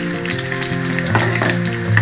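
Battered cauliflower pieces deep-frying in hot oil in a kadai, a steady sizzle and bubbling, with a slotted ladle stirring them and one knock of the ladle about a second in. Held notes of background music sound underneath.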